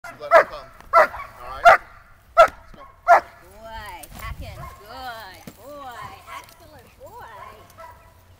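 German Shepherd barking five times in quick succession, about one bark every 0.7 s, at the helper during Schutzhund protection work.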